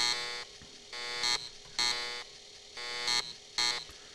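Emulated Commodore 1571 floppy disk drive sounds: a series of about five short buzzing bursts with brief gaps, as the Super Pascal system loads from disk.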